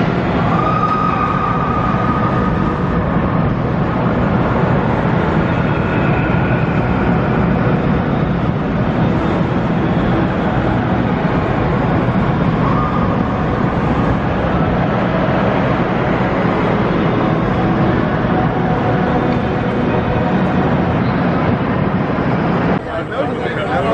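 Steel roller coaster train running along its track, a steady loud rumble echoing through a large enclosed hall.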